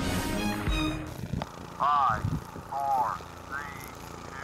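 The show's theme music ends about a second in, followed by a man's short, excited shouts or whoops, rising and falling in pitch, about one a second.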